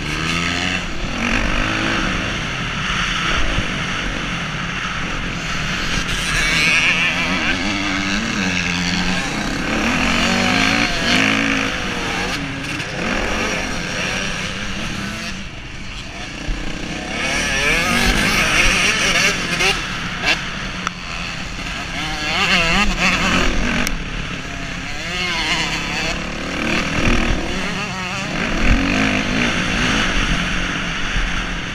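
Motocross dirt bike engine heard close from the rider's helmet, revving up and falling back over and over as it is ridden hard round the track.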